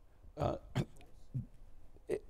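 A man's voice making three short, clipped vocal sounds, like hesitation noises or throat sounds rather than full words.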